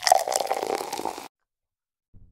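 Liquor poured from a bottle into a cup, gurgling for about a second before the sound cuts off abruptly.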